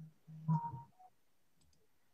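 A short voiced murmur over the video-call line about half a second in, followed by a few faint clicks and then near silence.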